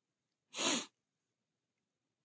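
A single short, breathy burst of breath from a young woman, about half a second in and lasting under half a second.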